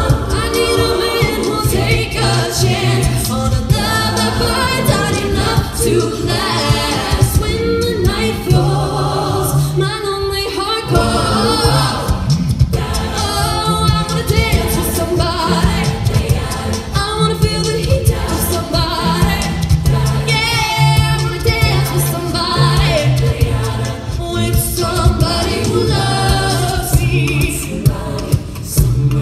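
A mixed male and female a cappella group singing into handheld microphones, amplified through stage speakers, with a low sung bass line holding notes about a second each under the harmonies.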